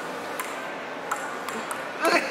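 Table tennis rally: a ping-pong ball clicking off the paddles and table, three sharp taps about two-thirds of a second apart, over steady background noise.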